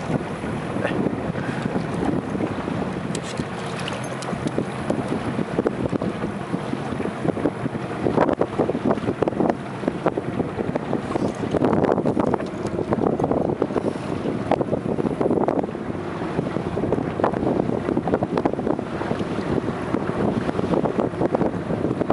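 Wind buffeting the microphone over the splash and rush of sea water against a small boat's hull, a steady noise that surges louder a few times in the middle.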